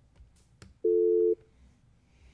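A faint click, then a single telephone tone about half a second long, two steady pitches sounding together: the beep of a phone call ending as the caller hangs up.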